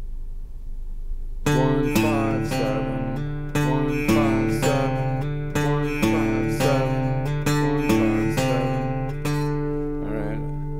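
Acoustic guitar with single notes picked one at a time, about two a second, over lower strings left ringing. The notes start about a second and a half in.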